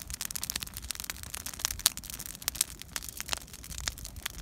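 Burning scrap limbs and brush, crackling with many sharp, irregular pops and snaps.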